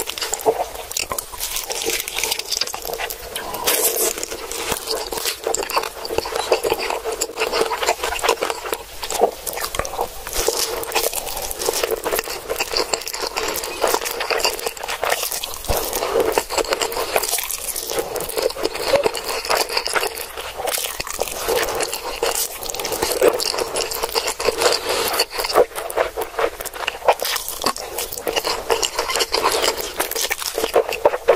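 Close-miked eating sounds of black bean sauce noodles being slurped and chewed, mouthful after mouthful, as a dense run of wet clicks.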